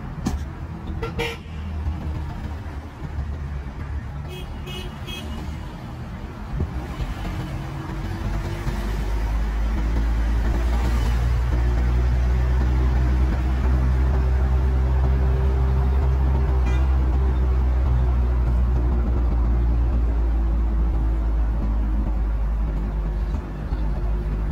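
Street traffic: short car-horn toots a few seconds in, then a steady low engine hum that grows louder about eight seconds in and holds.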